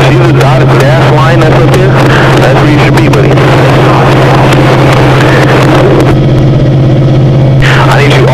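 Stock car engine running at steady high revs, heard from inside the cockpit, loud and distorted, with a constant deep drone. The harsher top of the sound drops away for a second or so about six seconds in, then returns just before the end.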